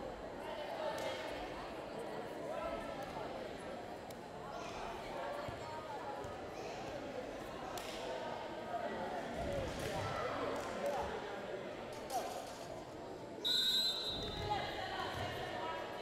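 Voices chattering in a large gym, with a ball bouncing on the hardwood floor a few times. Near the end, a referee's whistle blows once, briefly, signalling the serve.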